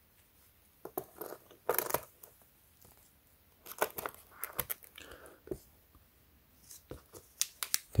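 Handling noise: soft rustling of a cloth and scattered light clicks as a smartwatch with a metal link bracelet is set down and shifted about on a microfiber cloth.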